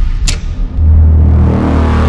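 Cinematic logo-sting sound effects: a sharp hit about a quarter second in, then a loud deep rumble that holds for about a second and cuts off at the end.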